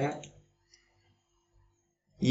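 The last syllable of a man's speech, then near silence with a faint computer-mouse click.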